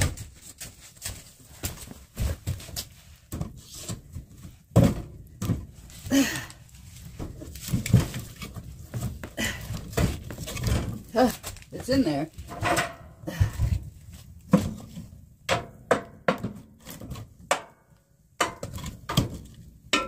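Firewood knocking and scraping against the steel firebox of a wood stove as a round log is shoved in and then pushed further with a metal poker: a run of irregular clunks and thuds.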